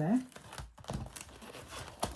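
Light rustling and crinkling of paper and card as papers are pushed into a card wallet and its flap is folded closed.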